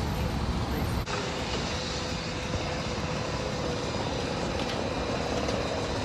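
City street traffic: the steady noise of cars passing.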